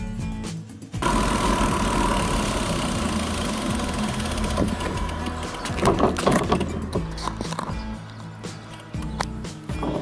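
Wind rushing over the microphone of a camera on a moving bicycle, starting suddenly about a second in and easing off in the last few seconds, with background music underneath.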